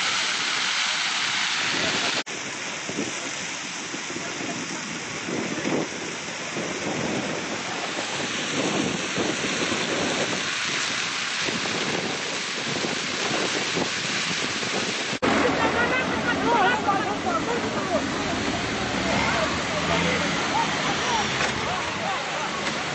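Burning wheat field: fire crackling and rushing, with wind on the microphone. After a cut about 15 s in, people's voices calling out join the noise.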